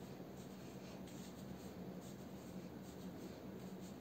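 Faint, scratchy rustling of fingers working through thick curly hair to separate and fluff the curls, over a steady low hum.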